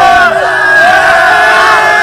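A team of footballers loudly chanting a victory song together, many men's voices holding drawn-out notes in unison.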